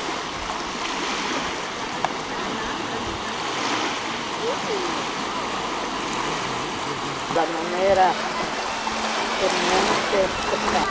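Small waves breaking and washing onto a sandy beach: a steady rush of surf, with voices briefly about three quarters of the way through.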